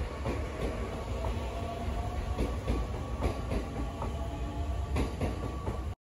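Electric commuter train at a station platform: a steady low rumble with a faint steady whine and scattered irregular clicks.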